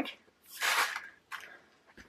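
A mesh zip bag holding small plastic diamond-drill pots being handled: a short rustle about half a second in, then a fainter, shorter one.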